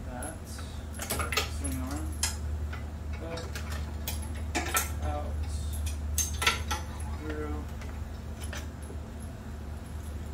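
Scattered light metallic clicks and rattles as a hydraulic brake line and its fittings are handled and worked along a steel bike frame, loudest around five and six and a half seconds in, over a steady low hum.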